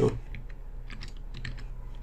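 A short run of keystrokes on a computer keyboard, a handful of light separate clicks typing a short word.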